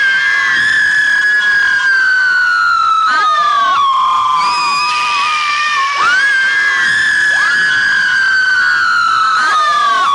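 A man screaming into a hand-held microphone: two long, high screams, the first at the start and the second about six seconds in, each sliding slowly down in pitch over about four seconds.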